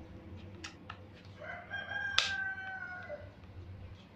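A rooster crowing once in the background, a single pitched call of about a second and a half that sags a little at its end. Over it come a few light clicks from the plastic body of an angle grinder being handled, the sharpest one in the middle of the crow.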